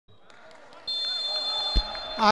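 Referee's whistle blown in one long two-tone blast, signalling the kick-off. A single thud of the ball being struck comes near the end.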